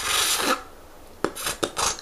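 Beatboxer's vocal percussion: a loud hissing rasp for about half a second, a short lull, then a quick run of sharp mouth clicks and hits near the end.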